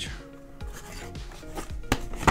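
Thin cardboard puzzle box being handled and its end flap opened: cardboard rubbing and scraping, with a sharp click near the end.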